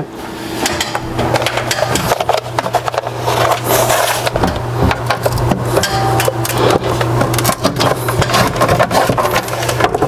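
Steel fish tape being fed off its reel and pushed through a drilled hole in a wooden bookshelf: a dense, continuous run of quick clicks, scrapes and rattles of metal against wood.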